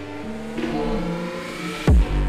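Suzuki GSX-S750 inline-four engine revving up, rising in pitch, mixed with music, with a loud hit just before the end.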